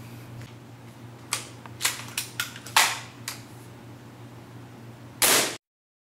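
A run of sharp clicks and knocks from handling a VSR-11 airsoft bolt-action rifle, the strongest about three seconds in, then a louder, longer burst just past five seconds that cuts off abruptly.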